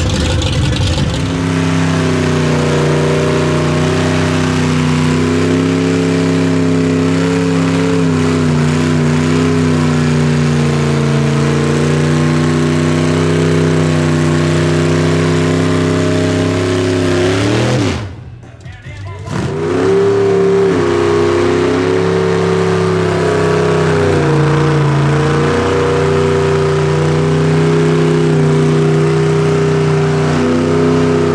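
A 1955 Chevrolet gasser's engine held at high revs through a smoky burnout, the rear tyres spinning. About 18 seconds in the revs drop off and the sound briefly dips, then the revs climb again and are held high.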